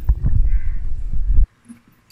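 Low rumbling and thumping of handling noise on a phone's microphone as the camera is moved. It cuts off abruptly about a second and a half in.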